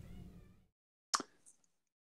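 A single short click or pop about a second in, amid otherwise near silence on a voice call.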